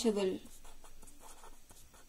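After a brief spoken sound at the start, a pen writes on paper held on a clipboard: a faint scratching of short, irregular strokes as a word is written out letter by letter.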